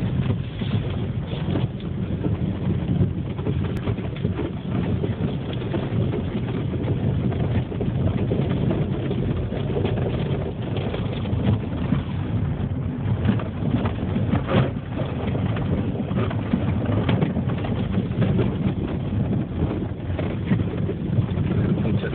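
Car driving slowly on a snow-covered road, heard from inside the cabin: a steady low rumble of engine and tyres, with scattered brief crackles.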